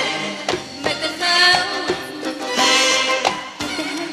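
A live band playing an Arabic pop song, with regular percussion strikes under a melodic line.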